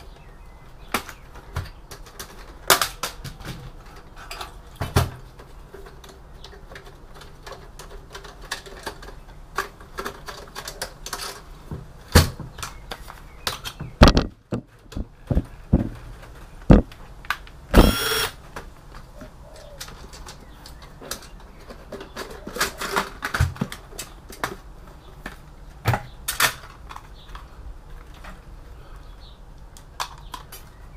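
Metal clicks, clunks and rattles of a desktop PC's steel case and drive cage being taken apart by hand. A heavy thump comes a little before halfway, and one short whir of a cordless drill-driver comes a little past halfway.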